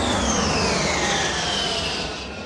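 Rocket whoosh sound effect: a rushing noise with a whistle that falls steadily in pitch, easing off near the end.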